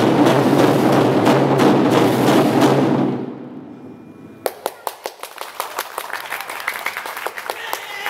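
An ensemble of large Chinese barrel drums played in a fast, loud roll that fades away about three seconds in. Then comes a quieter passage of sharp, irregular clicks of the wooden drumsticks.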